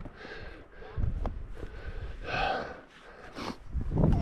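Heavy breathing of a man scrambling up rock: a few hard, noisy breaths, the loudest a little past halfway.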